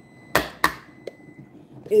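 A spoon knocking twice in quick succession against a jar as mayonnaise is scooped out, with a lighter tap a moment later.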